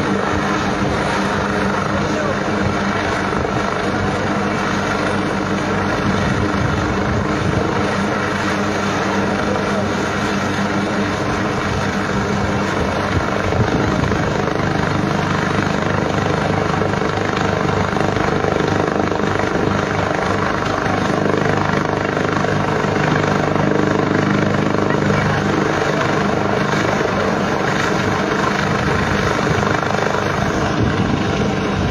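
A distant military helicopter hovering, its rotor and engine making a steady drone, with people's voices underneath.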